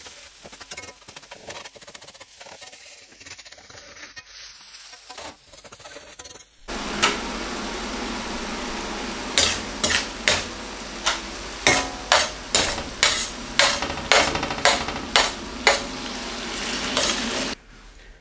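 Onion, tomato and spice masala sizzling in a wide steel pan. About a third of the way in the frying gets louder and a spoon stirring it scrapes and knocks against the pan roughly twice a second.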